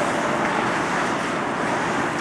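Steady hissing rink noise of an ice hockey game in play, mostly skate blades scraping and carving the ice, with no single hit standing out.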